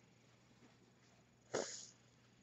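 A single short, sharp sneeze from a person about one and a half seconds in, over faint room tone.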